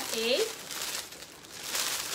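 Rustling as a shawl is handled and shaken out. It follows a brief spoken word and grows louder near the end.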